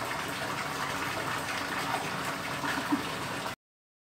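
Steady rushing background noise with no voices, which cuts off suddenly about three and a half seconds in.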